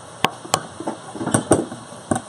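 Kitchen knife slicing button mushrooms, its blade knocking sharply on the cutting surface about four or five times at irregular intervals.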